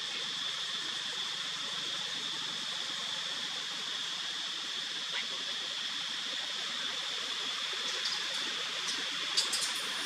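A steady, even hiss with a high band running through it, and a few sharp clicks close together near the end.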